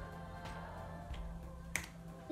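A single sharp finger snap about three-quarters of the way in, over a faint steady hum.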